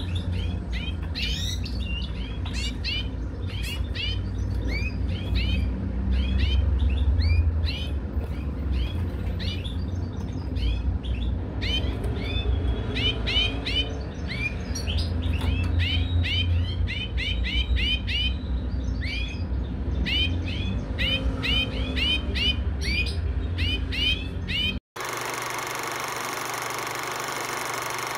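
European goldfinches twittering in rapid runs of short, high chirps, over a low rumble. Near the end the birdsong cuts off suddenly and steady music takes over.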